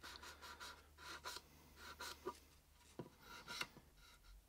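Faint scratchy rubbing of a sanding sponge on a plastic model tank turret, smoothing cured filler, in short runs of strokes about once a second.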